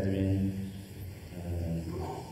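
A man's low voice, speaking in a near-monotone, with a short pause about a second in.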